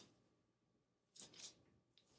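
Near silence: room tone, with a faint brief rustle a little over a second in.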